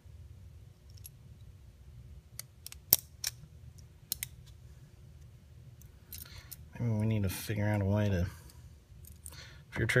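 Small metal parts of a pistol's fire-control chassis clicking as they are worked with a small screwdriver: a few light clicks, the sharpest about three seconds in. A man's voice follows briefly about seven seconds in, in two drawn-out sounds with no clear words.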